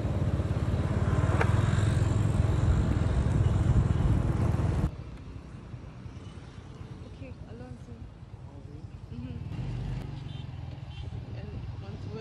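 A motor vehicle's engine and road noise runs loud and low with a fast pulse, then stops abruptly about five seconds in. After that it is quieter street ambience with a low hum and faint distant voices.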